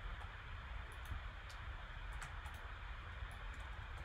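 A few faint computer mouse clicks, spaced irregularly, over a steady low hum of room tone.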